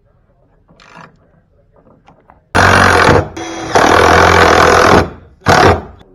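A handheld power tool run in three loud bursts: a short one, then a longer one of over a second, then a brief final one, with a faint knock before them.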